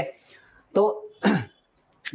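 A man says one short word, then briefly clears his throat.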